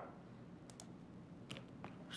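Near silence: quiet room tone with a few faint, sharp clicks.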